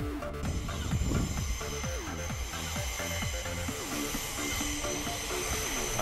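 Noise of a passing train, a steady rushing hiss that starts about half a second in, under background electronic music with repeated falling-pitch sweeps.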